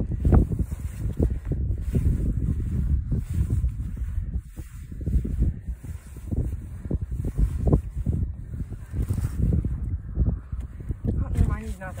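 Wind buffeting the microphone in uneven gusts, a low rumble that swells and fades throughout. A voice comes in briefly near the end.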